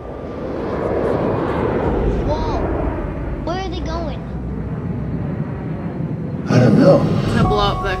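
Film-trailer sound effect of comet fragments streaking overhead: a deep rumble that builds over the first couple of seconds and holds, with a couple of brief voices over it. About six and a half seconds in it is cut off by a sudden louder stretch of speech and music.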